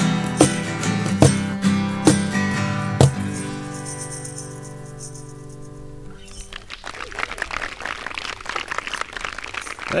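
Acoustic guitars strumming the final chords of the song, a strong strum roughly every second, with the last chord at about three seconds left to ring out and fade. From about six seconds in, a small audience claps.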